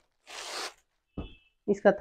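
Clear plastic packaging rustling as a folded cotton suit is slid out of its packet: one short swish lasting about half a second, followed by a soft knock a little after a second in.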